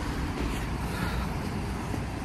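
Steady street background noise with a low rumble of road traffic.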